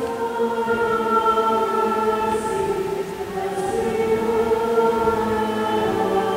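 Choir singing a slow hymn in long held notes.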